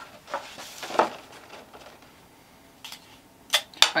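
Cardstock paper being handled and rustled, with a burst of rustling about a second in, then two sharp clicks near the end.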